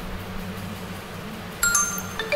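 A bright electronic notification chime, like a phone's message alert, rings out suddenly about a second and a half in over a steady low hum.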